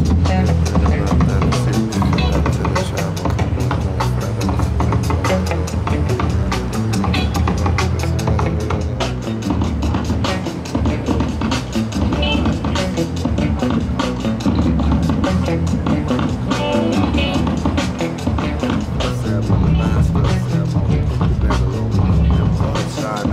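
Music with a steady beat and heavy bass.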